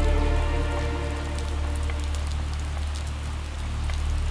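Steady heavy rain. A soft held musical chord fades out over the first couple of seconds.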